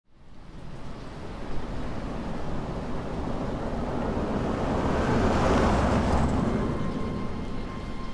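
A rushing noise with a low rumble that builds up from silence, peaks about two-thirds of the way through, then eases off. A faint steady tone enters near the end.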